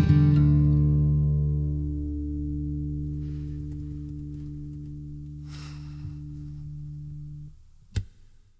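Acoustic guitar's final strummed chord ringing out and slowly fading, then cutting off about seven and a half seconds in. A single sharp click comes right at the end.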